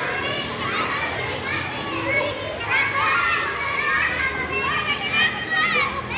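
Many elementary-school children shouting and chattering at play, their high voices overlapping throughout.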